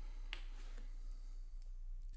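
A few faint clicks of fingers handling a wristwatch, over a low steady hum.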